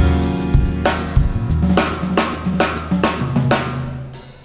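Live jazz instrumental: a drum kit with cymbal and drum strokes over low double bass notes, with no singing. It gets quieter toward the end.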